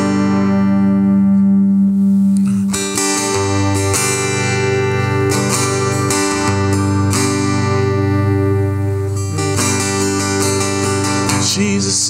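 Steel-string acoustic guitar strumming slow, ringing chords as a song intro; a singing voice comes in near the end.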